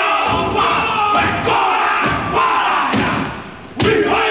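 A group of men performing a Māori haka: shouted chanting in unison, punctuated by stamps and body slaps about once a second. There is a brief lull, then one strong stamp and shout just before the end.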